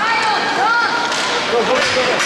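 Raised voices shouting over live ice hockey play, with skate blades scraping and sticks clacking on the ice in the second half.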